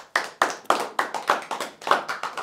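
Hand clapping: a short round of applause, quick uneven claps about four a second, marking the end of the talk.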